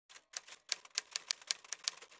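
Typewriter keys clacking in a quick, uneven run, about six strikes a second.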